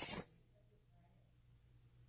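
A squirrel monkey gives a short, very high-pitched chirp at the very start, then near silence.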